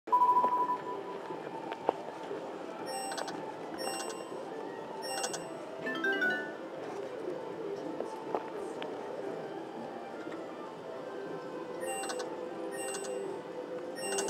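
Fortune of Asia video slot machine playing its free-spins bonus music, with a beep at the start and several clusters of bright, high electronic chimes as the reels stop. A short rising jingle comes about six seconds in.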